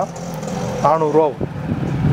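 A man's voice speaks one short phrase about a second in, over steady background noise and the rustle of cotton T-shirts being pulled from a pile.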